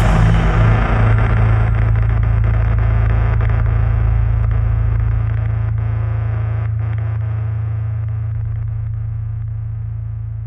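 The full metal band stops short, leaving one low distorted chord from the electric guitars and bass that rings on as a steady drone and slowly fades.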